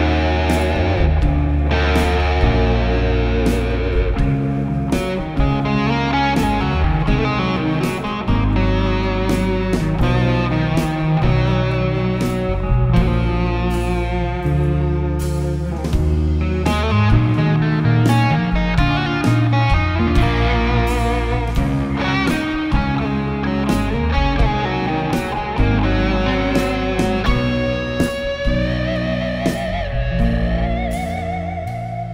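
A rock band plays an instrumental passage live, with the electric guitar out front over bass and drums. The guitar's notes waver and bend, and near the end a held note rises.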